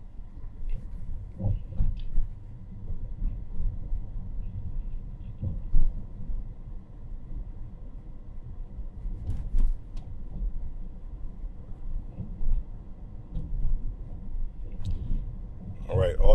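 Road and tyre rumble heard inside the cabin of a Tesla Model S Plaid, an electric car with no engine note, driving steadily at low speed. A few brief knocks stand out, two close together about halfway through.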